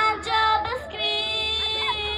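A young girl singing a song, with short phrases at first and then one long held note from about a second in.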